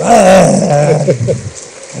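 A man's loud, drawn-out "aaa" cry, a theatrical vocal exclamation, strongest for about half a second and then breaking up and fading within about a second and a half.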